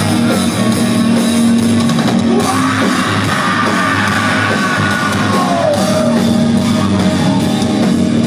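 Live rock band playing a song's instrumental intro on electric guitars, bass and drums, with yelling from the stage and crowd over it.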